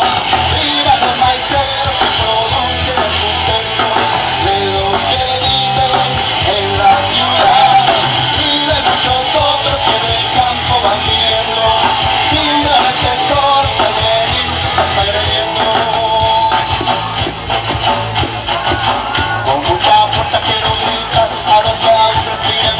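Live ska-punk band playing a song on electric guitars and drums through a stage PA, loud and continuous.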